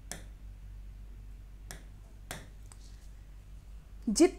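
Light taps of a hand or stylus on an interactive smartboard's touchscreen while picking pen colours from its on-screen palette: four short clicks, one at the start, two a little past halfway, and a fainter one just after.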